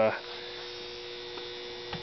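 Steady electrical hum, two even tones, from the 6-amp power supply driving a home-made HHO electrolysis cell at about 7 amps, with a faint hiss underneath.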